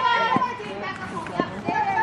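Several high-pitched young voices shouting and calling out at once, overlapping, with a few short knocks among them.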